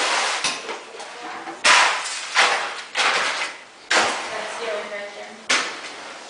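A series of loud, sharp knocks at irregular intervals, about six in all, each fading quickly, with faint voices in the background.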